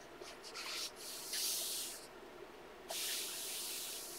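Coloring book page turning with a papery rustle, then a hand sweeping over the paper to press the book open, heard as two longer swishes.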